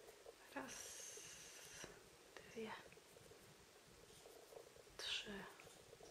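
Near silence with faint whispered or murmured speech: a soft hiss about half a second in, and brief murmurs in the middle and near the end.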